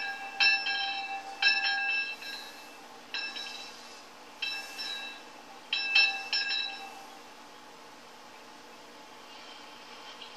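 Yoke-mounted metal bell rung by hand, clanging six times at uneven intervals over the first seven seconds, each stroke ringing out and fading. The last two strokes come close together, and the ringing dies away near the end.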